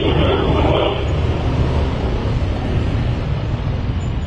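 Motorcycle under way: steady engine and road noise with wind rushing over the microphone.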